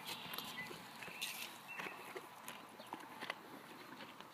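Faint, scattered light knocks and shuffles of a mare and her young foal moving on dirt ground close by.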